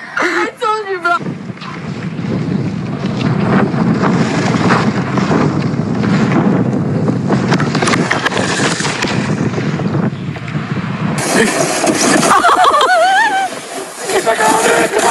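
Wind rushing over a handheld camera's microphone, a loud steady rush lasting about ten seconds. A brief voice comes before it, and after a cut a voice exclaims near the end.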